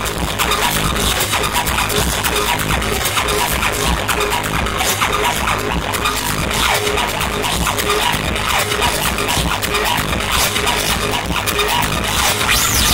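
Loud live electronic dance music through a venue sound system, with a steady heavy bass and a short synth note repeating at an even pace.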